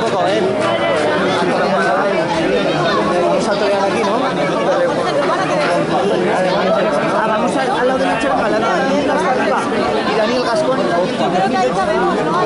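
Crowd of spectators chattering: many voices talking over one another at a steady, fairly loud level.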